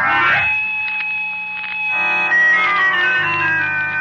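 Organ music bridge between scenes of a radio drama: held chords, with a fuller chord entering about halfway and a melody stepping downward.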